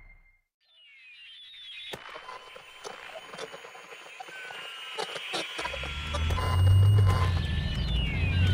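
Faint ambience with high chirps and scattered clicks, then, about two-thirds of the way in, the low steady hum of a car running, heard from inside the cabin.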